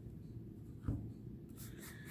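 A deck of oracle cards being handled and squared in the hands: soft rubbing of the cards, with one light tap about a second in and faint rustles near the end.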